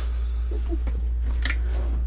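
A steady low hum with light handling noises as a steel tool-cabinet drawer full of plastic-bagged safety razors is pulled open. There is one short sharp click or rustle about one and a half seconds in.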